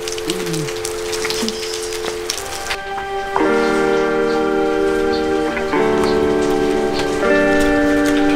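Steady rain falling, with a held two-note tone over it. About three seconds in the rain sound drops away and background music of held chords comes in, changing chord every couple of seconds.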